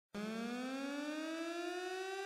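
A single synthesized tone, rich in overtones, starting just after the opening and gliding slowly upward in pitch: a rising sound effect that opens the intro music.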